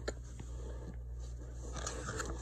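Paper booklet handled and turned over, a faint click and light paper rustle, over a steady low hum.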